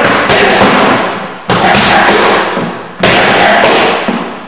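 Boxing gloves striking focus mitts in loud bursts of punches, a new burst starting about every second and a half.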